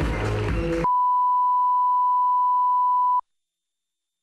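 Music with a steady beat cuts off about a second in and is replaced by a steady pure beep: the broadcast line-up test tone that plays with colour bars. The tone stops abruptly near the end.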